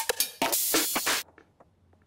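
Electronic drum loop run through the Rhythmizer Fusion glitch engine: a steady kick under glitched drum hits and stuttering repeats. It cuts off suddenly a little over a second in, leaving near silence.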